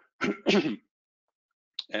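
A man coughing twice in quick succession to clear his throat.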